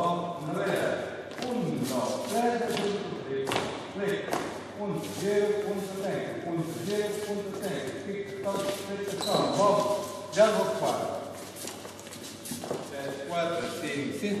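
Voices talking indistinctly in an echoing hall, with dance shoes stepping and stamping on the hard floor.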